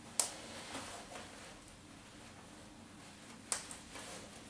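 Trench coat buttons being fastened by hand: two sharp clicks about three seconds apart, with faint rustling of the coat fabric in between.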